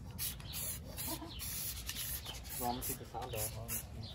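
Aerosol spray-paint can hissing in short repeated bursts, about two to three a second, as paint is sprayed onto a brake caliper bracket.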